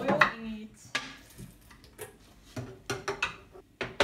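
A few light, scattered clicks and knocks of a metal pot and kitchen items being handled at the stove.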